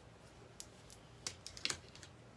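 A few faint, light clicks and rustles in the second half as hands gather and section the hair on top of the head.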